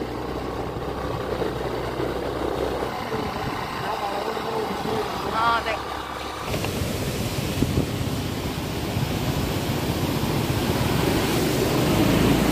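A moving vehicle with a low, steady engine hum. About six and a half seconds in it gives way to an even rushing noise that grows slowly louder toward the end.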